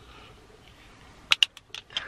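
A quick run of six or seven sharp clicks and taps from eyeglasses being handled, as sunglasses are taken off and regular glasses put on. The clicks begin after a quiet first second or so.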